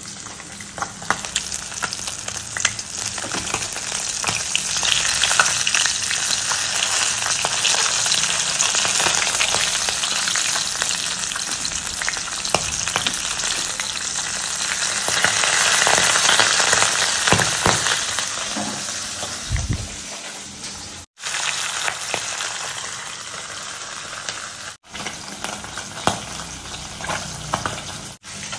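Small turmeric-coated whole fish frying in hot oil in a stainless steel kadai, a steady sizzle and crackle of spitting oil, with the scrape and tap of a spatula turning the fish. The sizzle breaks off briefly twice near the end.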